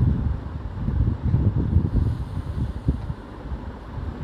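Low, uneven rumble of wind and handling noise on a handheld camera's microphone as it is carried through the rooms.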